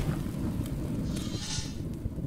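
Low, noisy rumble of a logo-intro sound effect, thunder-like, slowly fading away after a deep boom.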